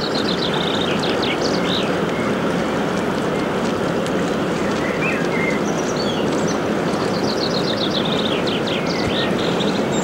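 A passing inland motor cargo ship: a steady rush of churning water and engine noise. Over it, a small bird calls twice in quick runs of high chirps, once near the start and again about seven seconds in.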